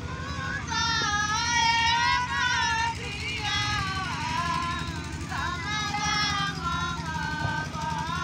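High women's voices singing a Chhath Puja devotional folk song, long held notes that waver and slide in pitch, over a steady low rumble.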